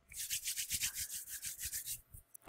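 Rapid, even rubbing or scratching strokes, about ten a second, light and hissy.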